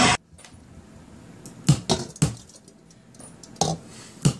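A few sharp knocks of hard objects striking: two loud ones a little under two seconds in and again about half a second later, then two more near the end, each with a short ring.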